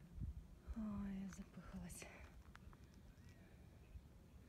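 A quiet murmured voice: a short held hum about a second in and a brief sound just after, over a low rumble on the microphone.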